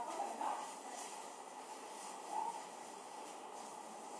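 Steady, fairly quiet background hiss of room noise, with a couple of brief faint sounds about half a second and two and a half seconds in.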